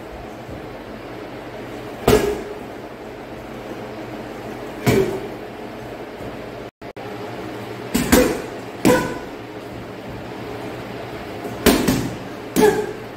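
Strikes landing on a hanging heavy punching bag: separate, irregularly spaced thuds, about seven in all, two of them coming in quick pairs. The sound drops out completely for a moment near the middle.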